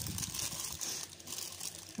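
Thin clear plastic wrapping crinkling as hands squeeze and turn a bagged squishy toy.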